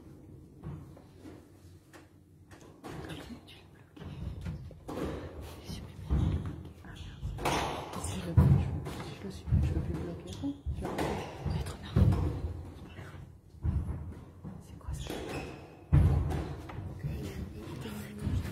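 Squash rally: the ball struck by rackets and hitting the court walls in a series of sharp thuds, roughly one every second, quieter for the first few seconds and louder from about five seconds in.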